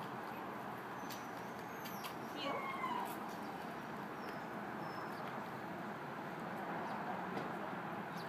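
Steady outdoor background noise with a few faint clicks scattered through it.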